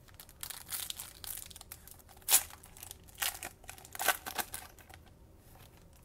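Foil wrapper of a Panini Mosaic basketball card pack crinkling and being torn open by hand, in a string of sharp crackles; the loudest comes about two and a half seconds in.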